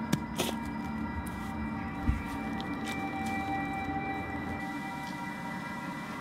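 Background music of long held tones at several pitches, with a few short knocks near the start and a low thump about two seconds in.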